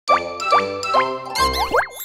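Short cheerful musical logo jingle: three notes about half a second apart, each sliding up in pitch, then a quick flourish of sliding tones over a low note near the end.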